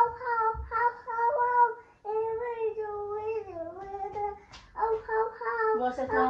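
A toddler singing in a high voice, long held notes that slide up and down in a few phrases with short breaks.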